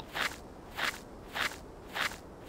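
Footsteps on sandy ground, four even steps a little over half a second apart.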